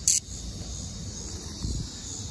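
Steady high-pitched drone of cicadas in the background, with a short, loud, high rasp at the very start and a low handling bump near the end.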